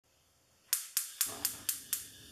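A run of six sharp, evenly spaced percussive hits, about four a second, each ringing out briefly, starting after a moment of silence: an intro sound effect over the logo.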